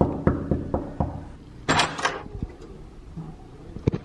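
Knuckles knocking on a hotel room door, a quick run of about five raps in the first second. Then comes a louder rattling burst about two seconds in as the door is unlatched and opened, and a few clicks near the end.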